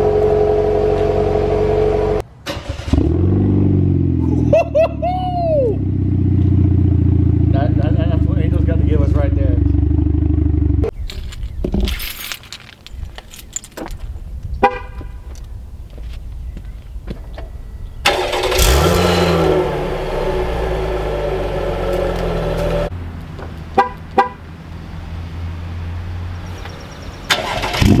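Stock exhausts of Chevrolet Camaros running, first a 2019 Camaro LT and then a 2024 Camaro RS with its 3.6-litre V6, heard in several clips with hard cuts between them. Revs rise quickly at about two and a half seconds and again at about eighteen and a half seconds, with steadier running in between and a quieter stretch of clicks from about eleven to eighteen seconds.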